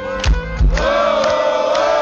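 Live heavy metal band playing: deep bass-drum thumps under a long held note that rises in pitch about three-quarters of a second in.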